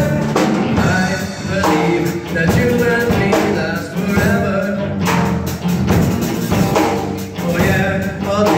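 Live rock band playing: a singer over several electric guitars, bass guitar and a drum kit.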